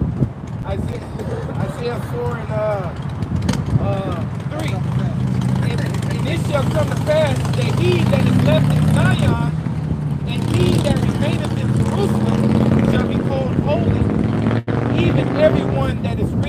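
People talking over a steady low rumble that grows louder after the middle.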